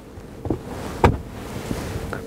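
Plastic clicks and a knock from a car's centre armrest storage lid being unlatched and opened, the sharpest click about a second in, with some handling rustle.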